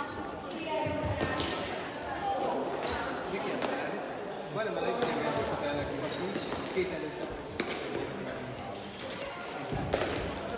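Sharp knocks of a shuttlecock being kicked back and forth over a net during a rally, a few seconds apart, with players' shouts and footfalls ringing in a large sports hall.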